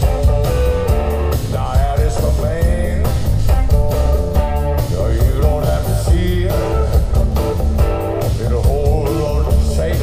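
Live band playing through a PA: electric guitar out front, with bass guitar and drums underneath, heard from the audience.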